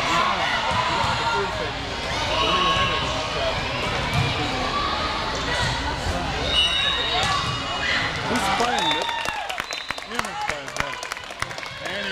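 Indoor volleyball match: many overlapping voices of spectators and players, with thuds of the ball being hit. Near the end comes a run of sharp claps as the rally ends.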